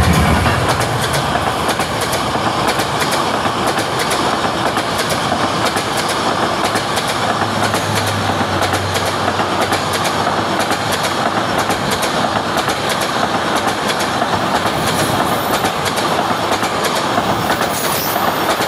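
A passenger train passes close by at speed: a loud, steady rush of wheels on rails, dotted with rapid clickety-clack of the wheels over rail joints.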